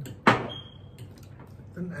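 A single sharp clink of tableware on a ceramic plate or cup, with a thin high ring that lingers about half a second, then a small tap.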